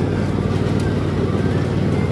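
Cub Cadet XT1 LT46 riding mower's engine running steadily at working speed with its twin 46-inch mower blades engaged, cutting dry weeds.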